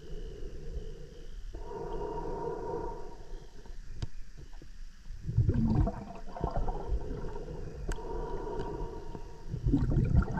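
Underwater gurgling and bubbling from scuba divers on rebreathers, with a short humming drone about a second and a half in and louder bursts of bubbles about five seconds in and at the end.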